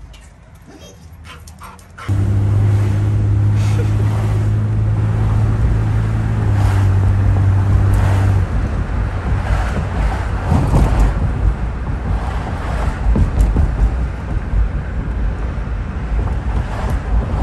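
Car driving with a window open. From about two seconds in there is a steady low engine hum, and past the middle wind buffeting the microphone takes over as a rough, gusting rush.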